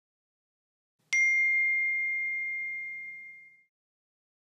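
A single bright, bell-like ding struck once about a second in, ringing on one high tone and fading out over about two and a half seconds.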